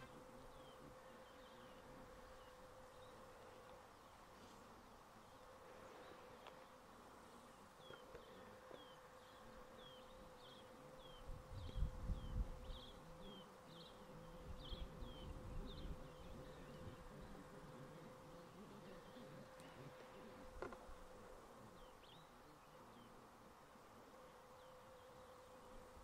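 Faint field ambience: a steady, single-pitched insect buzz, with a run of short, high, falling chirps repeated about twice a second through the first half. A couple of brief low rumbles come around the middle.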